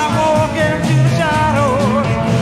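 Rock music from a full band, with a melody line that bends and wavers in pitch over a dense, steady accompaniment.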